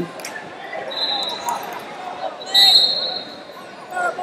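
Large indoor arena ambience at a wrestling tournament: scattered voices echoing around the hall, with two short, high-pitched whistle tones, one about a second in and another, louder one about two and a half seconds in.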